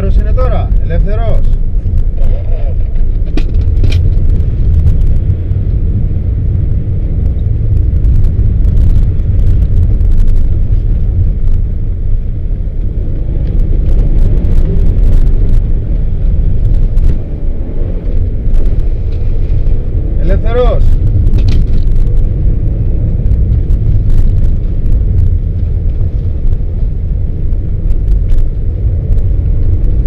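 Cabin noise of a Subaru Forester 2.0XT with a turbocharged flat-four engine, driving on a snowy road. The engine and tyres make a steady, heavy low rumble that swells and eases a little, with a brief dip about 17 to 18 seconds in.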